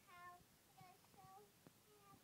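A toddler's voice, faint, singing a few short high notes.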